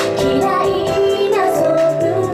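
Female J-pop idol group singing live into handheld microphones over pop backing music, amplified through stage loudspeakers.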